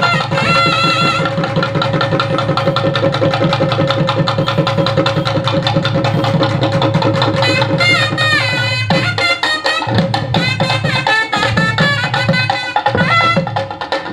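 Live Tamil folk music played over loudspeakers: a drum beaten in fast, even strokes under a wind instrument playing an ornamented melody with sliding notes, over a steady held drone. In the last few seconds the low drumming breaks into short bursts while the melody carries on.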